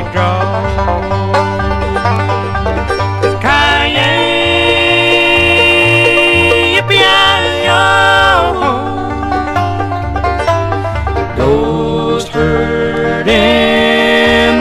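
Bluegrass band playing: five-string banjo picking over a bass line that alternates between notes, with long held notes above it that slide and bend in pitch.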